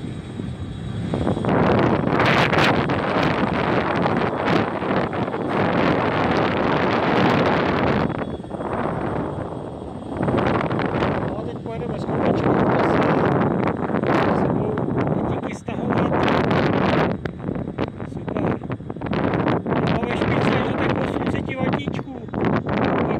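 Wind buffeting the microphone of a kick scooter moving at about 25 km/h, a loud rushing noise that swells and drops every few seconds.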